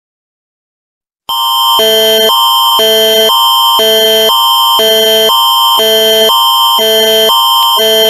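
Canadian Alert Ready attention signal: a loud electronic alarm of several pitches at once, switching back and forth between two tone sets about twice a second. It starts about a second in.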